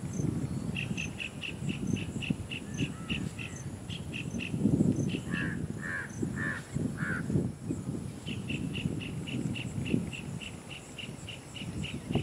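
Asian tusker elephant grazing: irregular rustling and thudding as its trunk pulls and tears grass, strongest around the middle. Over it, runs of rapid high chirps, about four a second, in the first few seconds and again in the last four, and four louder calls in a row near the middle.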